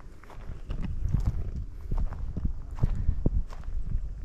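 Footsteps crunching on a dry dirt and leaf-litter path, irregular, over a steady low rumble of wind on the microphone.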